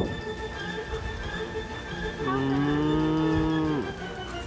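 A cow mooing once: a single long, low moo of about a second and a half that starts about halfway in and drops in pitch as it ends.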